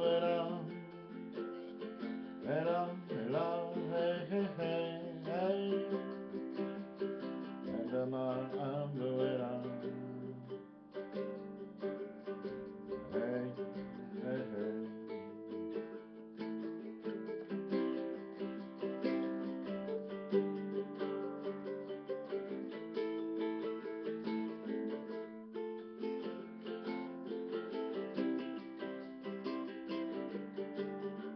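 A guitalele, a small six-string guitar-ukulele hybrid, strummed steadily through the song's G–D–Em–C chord progression in an instrumental passage.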